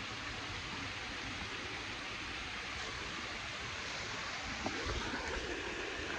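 Steady rushing of river water flowing over rocks, with a brief low rumble about five seconds in.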